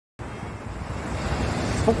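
Sea surf breaking and washing ashore, with wind rumbling on the microphone. It cuts in suddenly a moment in and grows steadily louder.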